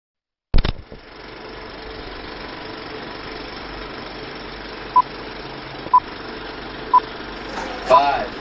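Vintage film-leader countdown sound effect. A sharp click starts it, followed by a steady projector-like hiss and rumble, with a short high beep once a second from about five seconds in.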